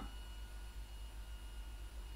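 Quiet room tone: a low steady hum with a few faint, steady high-pitched tones over a soft hiss.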